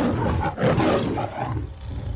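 Lion roar sound effect played as a logo sting: a deep, rough roar that swells in, is loudest about half a second to a second in, then trails away.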